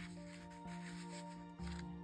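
Soft background music of sustained notes that change about once a second, with a faint rustle of paper tickets being handled.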